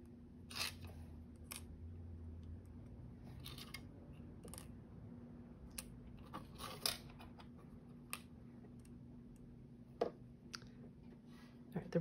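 Faint, scattered small clicks and rustles of thin metal letter dies and paper being placed and pressed onto a plastic die-cutting plate by hand.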